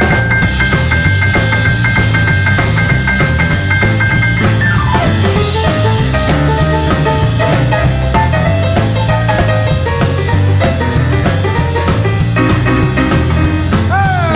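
Instrumental break of a rock and roll band recording: drum kit and bass keep a steady beat under a lead instrument. The lead bends up into a long held high note for about four seconds, then falls away into a run of shorter melody notes, with another bent note near the end.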